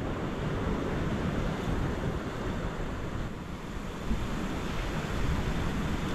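Rough ocean surf washing against lava-rock cliffs, a steady rush of churning water, with wind on the microphone.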